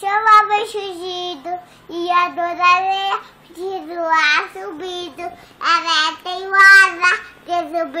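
A young boy singing: a string of short, fairly level, high-pitched phrases with brief breaks between them.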